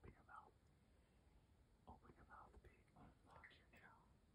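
Near silence with a person whispering faintly in short bursts.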